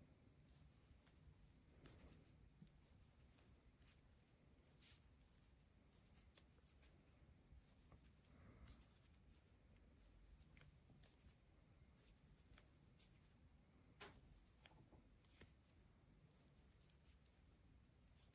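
Near silence, with faint scattered clicks and rustles of a metal crochet hook working cotton yarn; one slightly sharper click about fourteen seconds in.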